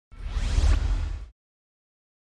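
Logo-intro whoosh sound effect: a rising swoosh over a deep rumble, lasting just over a second.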